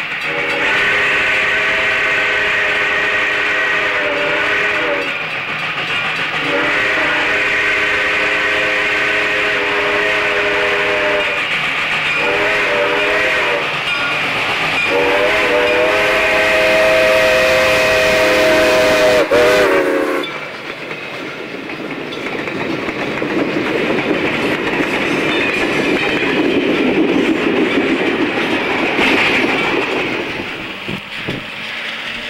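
Reading & Northern 425, a Baldwin steam locomotive, sounding its chime steam whistle in four blasts, long, long, short, long: the grade crossing signal. About twenty seconds in, the sound changes abruptly to a steady rumbling noise.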